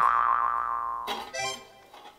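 Comic sound effect: a tone that glides up, then holds and fades over about a second, followed by a short musical sting.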